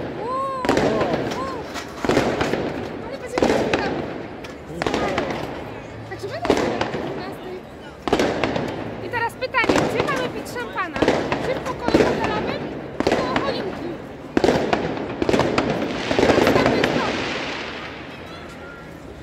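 New Year's Eve fireworks and firecrackers going off overhead: a long series of sharp bangs, one every second or so, each echoing, with a longer, denser crackling burst near the end.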